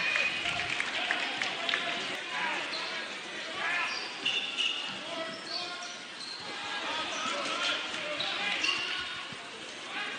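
Basketball being dribbled on a gym floor amid crowd chatter, with short high squeaks of sneakers on the court in the middle.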